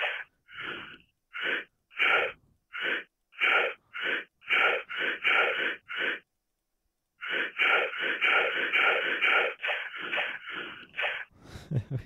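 Recorded heavy-breathing clips from a prank-call soundboard, played one after another as short gasping breaths about two a second. A little past the halfway mark they stop for about a second, then a quicker run of breaths follows.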